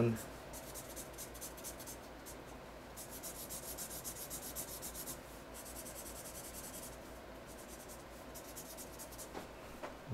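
Broad-tip felt marker scratching across paper in quick back-and-forth colouring strokes, coming in several runs with short pauses between them.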